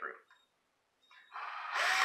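Cordless drill with a Robertson bit driving a wood screw through a wooden upright into a wooden arm. It starts about a second and a half in and grows loudest near the end, its motor pitch rising and then easing off.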